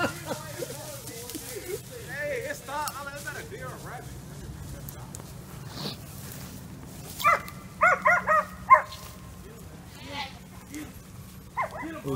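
Hunting dogs barking: a quick run of about five sharp barks a little past the middle, with fainter calls earlier.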